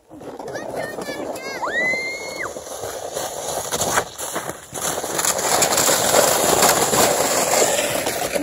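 A child's high, drawn-out yell about two seconds in, then a sled sliding and sloshing through a slushy puddle of snowmelt, a rising hiss that is loudest about six to seven seconds in.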